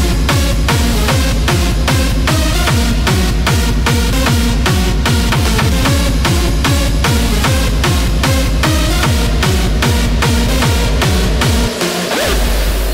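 Hardstyle dance music played loud: a hard kick drum on every beat, about two and a half a second, under a synth melody. The kick drops out for a moment near the end.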